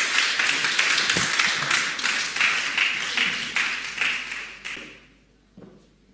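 Audience applauding with many hands clapping, dying away about five seconds in.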